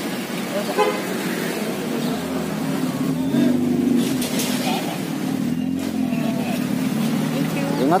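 A steady low motor hum, most likely a vehicle engine running nearby, louder for a moment between three and four seconds in, under the chatter of people close by.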